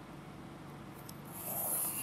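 Pencil drawn along a ruler's edge on paper: one short scratching stroke in the second half, lasting under a second.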